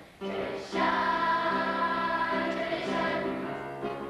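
A group of voices singing a slow song together, holding long notes and stepping from note to note.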